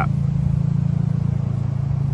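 A car engine idling steadily: a low, even hum that neither rises nor falls.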